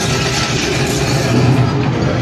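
A theme-park dark ride's soundtrack playing loudly: dense, steady music.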